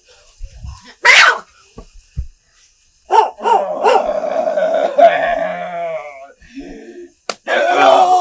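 A person's wordless cry: a sharp burst about a second in, a couple of soft thumps, then a drawn-out, wavering wail for about three seconds, with another cry starting near the end.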